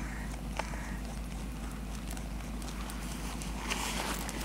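A rabbit chewing a piece of vegetable core: scattered small crisp crunches and clicks, with a louder crunch near the end.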